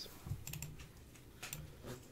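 A few scattered light clicks from a computer mouse and keyboard as text on screen is selected.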